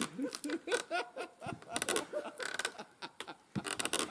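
Dead log seesaw creaking and groaning in short bending squeaks as it pivots and flexes on a wooden fence under a rider's weight, with men's laughter mixed in.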